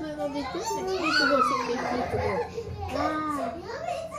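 A toddler's voice vocalizing without clear words: a run of high calls and babble that slide up and down in pitch.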